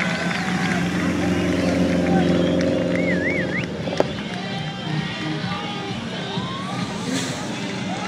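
Turbocharged Subaru Impreza engine revving hard as the car drifts, loudest in the first half, with a single sharp crack about halfway. A crowd shouts and whistles over it.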